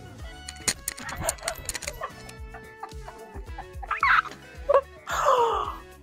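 A woman laughing in short bursts over background music; the loudest laugh comes near the end and falls in pitch.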